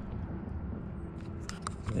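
Low steady rumble with a few faint, short clicks in the second half, from the loose door panel and its wiring plugs being handled.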